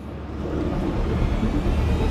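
Steady low rumble of engine and road noise inside a Kenworth semi-truck's cab at highway speed, growing gradually louder.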